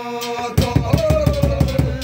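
Large rope-laced barrel drum beaten with two sticks in a fast, steady beat that starts about half a second in. It plays over the clashing of large metal hand cymbals and men's devotional singing.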